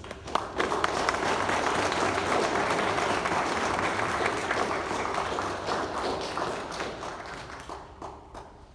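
A crowd of people applauding, building within the first second, holding steady and then dying away near the end.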